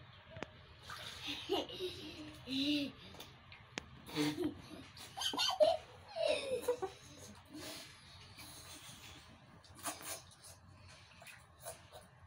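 Water poured from a cup splashing over a small child in a plastic basin, in several pours, with the child's voice and laughter in between.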